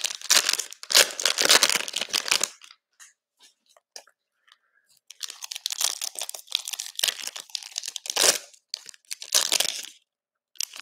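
Plastic wrapping of a Panini Prizm football cello pack crinkling and tearing as it is ripped open by hand. A short lull of a couple of seconds follows, then more crinkling with a few sharper crackles near the end as the inner pack is pulled open.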